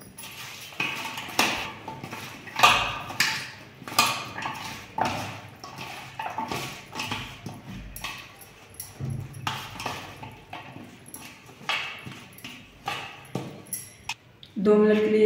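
Hands mixing cut okra with gram flour and spices in a stainless steel bowl: irregular knocks and scrapes of the okra and fingers against the steel, one or two a second.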